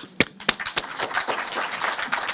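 Audience applauding: a few separate claps, then steady clapping from the whole room.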